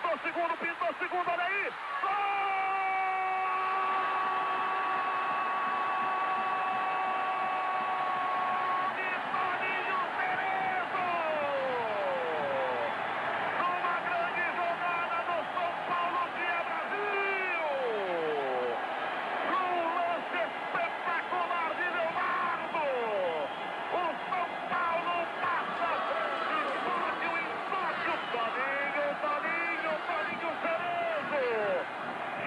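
Football TV commentator's long drawn-out goal shout, one note held for about seven seconds, then excited shouting with falling pitch, over the steady noise of a stadium crowd.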